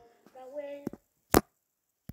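Two sharp taps, the second much louder, about a second and a half in. Before them a faint voice comes from the video being played.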